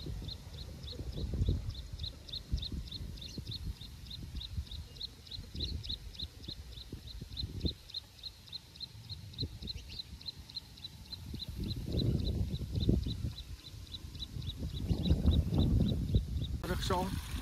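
Wind gusting on the microphone in a grassy field, with low rumbling surges that rise and fall, over a steady run of short high-pitched chirps, about three or four a second, from a small animal.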